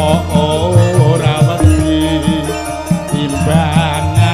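Live Javanese campursari song: a singer holding long notes with vibrato over gamelan and drum accompaniment, played through a PA.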